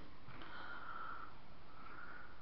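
Two soft breaths through the nose over a steady background hiss.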